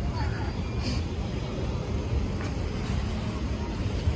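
Street noise from a road jammed with slow-moving and idling cars: a steady low rumble, with faint voices from people on the pavement.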